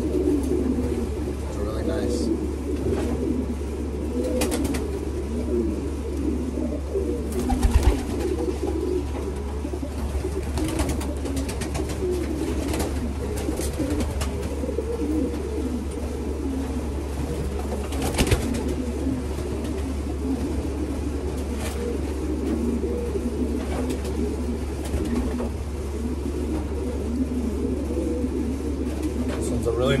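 A loft full of racing pigeons cooing continuously, many birds at once. A few short, sharp clatters break in; the loudest come about 8 and 18 seconds in.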